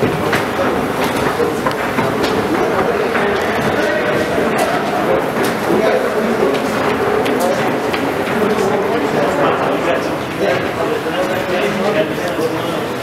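Many people talking at once: a steady hubbub of overlapping voices with no single clear speaker, in a large, echoing hall.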